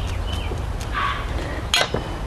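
Wire strippers working the end of a short jumper wire: a few small metallic clicks and one sharp click near the end, over a steady low rumble.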